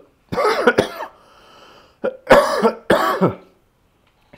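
A man coughing: two loud coughing bouts about a second apart, the second one longer.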